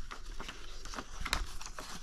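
Sheet of paper rustling as a folded letter is opened and pressed flat by hand, with a few light ticks and crackles.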